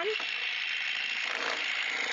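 Scrub&Go cordless handheld power scrubber running with its nylon bristle brush head scrubbing a glass-top cooktop: a steady motor-and-bristle scrubbing noise.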